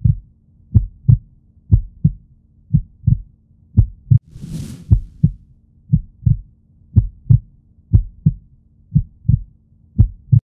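Heartbeat sound effect: paired deep thumps, about one beat a second, over a faint steady low hum. A brief hiss comes about four and a half seconds in.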